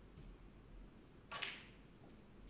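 A single sharp click from the snooker table, about one and a half seconds in, over faint room tone.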